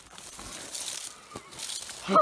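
Dry grass and brush rustling and crackling, with a single light click about a second and a half in.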